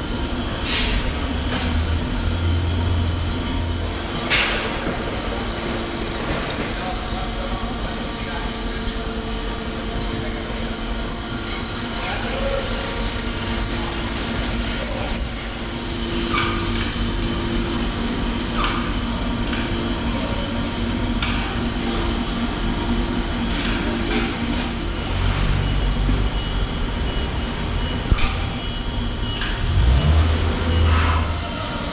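KASTOtec A4 automatic bandsaw running as it saws a round steel bar, a steady machine hum with a high, wavering whine through the first half and a few sharp knocks.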